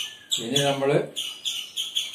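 A small bird chirping over and over, several short high chirps a second, with a man's voice speaking briefly over it.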